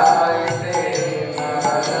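A man chanting a devotional song, keeping a steady beat on small brass hand cymbals (kartals) struck about three or four times a second, their metallic ring carrying between strikes.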